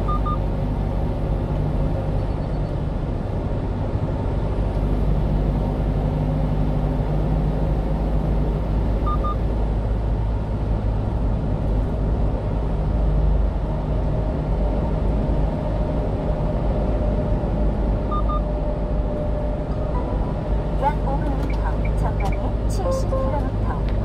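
Steady engine and road noise of a 1-ton refrigerated box truck driving along, heard from inside the cab.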